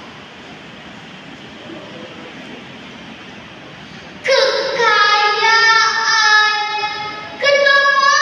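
A girl's voice reciting a Malay poem in a drawn-out, sung style, with long held notes that glide in pitch. It starts about four seconds in, after a pause with only low background noise.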